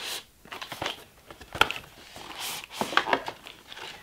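Cardboard packaging handled: a paperboard tray scraped and slid out of a cardboard box, with rustling and a few short clicks, the sharpest about a second and a half in.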